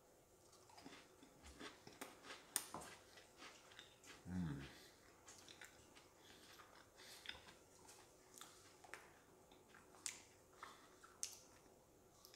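Faint chewing of a milk-dunked chocolate-and-vanilla wafer sandwich cookie (Trader Joe's Neapolitan Joe-Joe's), with small irregular crunches. A brief low hum from the eater comes about four seconds in.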